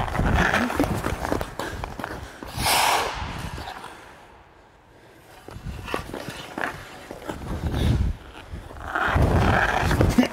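Hockey skate blades pushing, scraping and carving on rink ice in several noisy bursts, loudest near the start, about three seconds in (a bright hiss), and again near the end.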